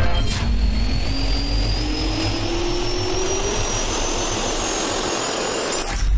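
Jet engine spooling up: a steady rushing noise with two whines that climb steadily in pitch, one low and one high, cutting off suddenly near the end.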